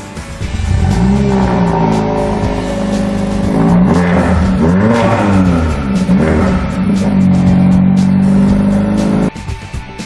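Mercedes-Benz CLA45 AMG's turbocharged 2.0-litre four-cylinder being revved while the car stands still. The engine note comes up about a second in, swings up and down in pitch several times in the middle, then holds steady and cuts off suddenly near the end.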